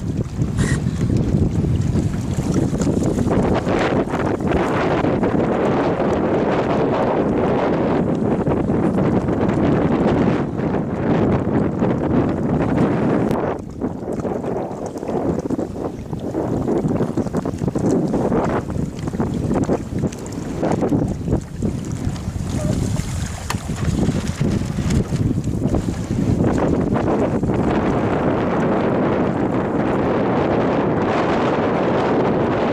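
Gusty wind buffeting the microphone, a loud, even rush of noise that eases briefly a few times and then builds again.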